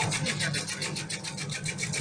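Ginger shredding machine's rotating cutter slicing ginger into strips: a rapid, even rasping of blade strokes over a steady motor hum.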